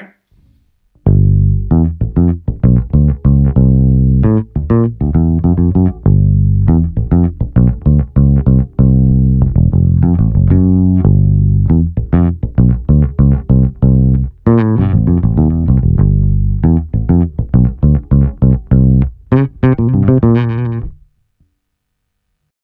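1965 Fender Precision Bass recorded direct through a DI, playing a steady line of plucked notes, fitted with Allparts bridge saddles on its original 1965 baseplate. The player hears a slight loss of mid character in the tone with these saddles. The notes start about a second in and stop about a second before the end.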